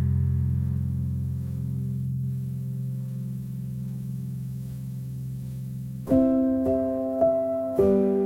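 Solo piano: a low chord held and slowly fading, then about six seconds in a new phrase of single struck notes and chords begins in the middle register, one every half second or so.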